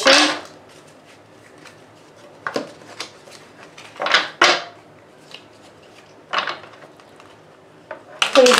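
A deck of tarot cards being taken out of its box and handled by hand: a few short scraping, rustling bursts of card against card and cardboard, spread a second or more apart, with faint clicks between.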